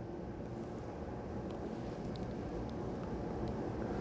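Low, steady room hum, with a few faint small ticks.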